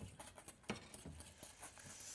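Faint, irregular light clicks and taps of a utensil against a mixing bowl as hot milk is stirred into beaten eggs.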